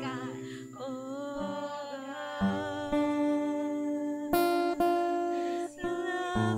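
A slow worship song: a woman singing, accompanied by acoustic guitar chords strummed every second or so.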